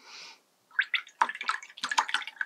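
Wet watercolour brush working in water, a soft brief rush followed by a quick irregular run of small splashes and clicks.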